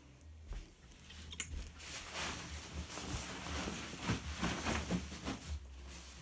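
Rustling and brushing of quilted mattress-topper padding and cotton fabric being handled and smoothed by hand, with a short click about a second and a half in.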